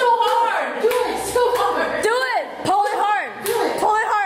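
Several people exclaiming and laughing, with drawn-out rising-and-falling "ooh" sounds, and a few sharp knocks or claps between them.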